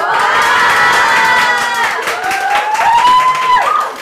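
Audience crowd cheering with many high voices crying out at once in long held shouts, some rising and falling. The cheering dies down just before the end.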